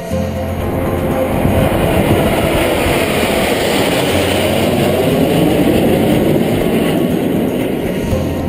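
A formation of aircraft flying overhead: a loud rushing roar that builds over the first second or two, holds, and eases off near the end, with music underneath.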